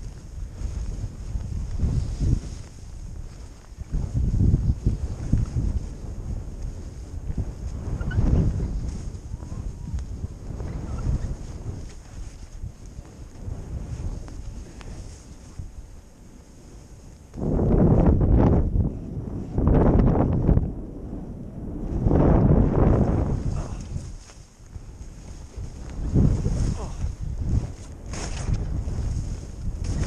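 Skis sliding through chopped powder snow with wind rushing over the action camera's microphone, swelling and fading with each turn, and louder surges a little past the middle.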